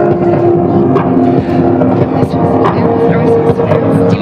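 Live electronic music: sustained droning synth notes that step to a new pitch partway through, with scattered percussive hits over a dense noisy bed.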